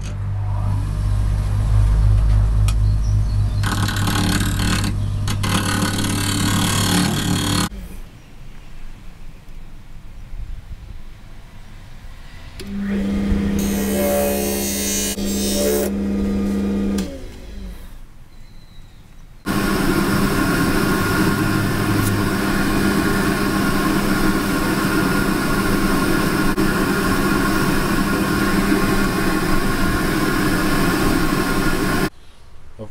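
Jet mini wood lathe running while a skew chisel, used as a scraper, cuts back the hard epoxy putty inlay and mahogany of the spinning bowl rim: a steady motor hum with a rough scraping hiss. After a cut a steadier motor tone comes and goes, and in the last third a loud, even hiss of sanding runs over the lathe.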